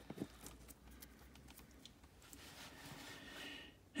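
Faint taps of small paper cards being set down on a cardboard box: a few light ticks in the first second or so.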